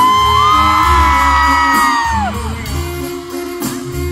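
Live norteño-banda music with a pulsing tuba bass line and band playing, over which a high voice holds one long note for about two seconds before falling away.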